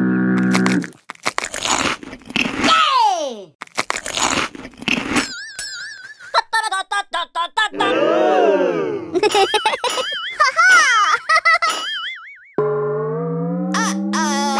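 A string of cartoon sound effects: boings, falling whistle-like glides, warbling tones and quick clicks. A short held musical chord sounds at the start and another comes in near the end.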